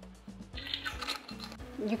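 Soft background music with low held notes that change in steps, and a brief faint hiss about half a second to a second in.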